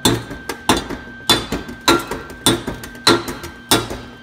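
Seven sharp metallic taps on a welded-up steel exhaust manifold, about every 0.6 seconds, each ringing briefly. This is the weld being tapped to show it is solid.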